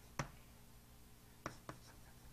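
Chalk tapping on a blackboard while writing: a few short, faint taps, one just after the start and two close together near the end.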